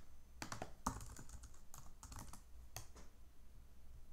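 Faint typing on a computer keyboard mixed with mouse clicks: a scattered run of light taps that thins out after about three seconds.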